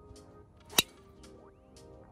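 A golf driver striking a ball off the tee: one sharp crack about a second in, over background music with a steady beat.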